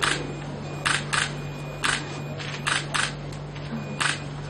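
Camera shutters clicking as photos are taken, about seven sharp clicks at uneven spacing, some in quick pairs.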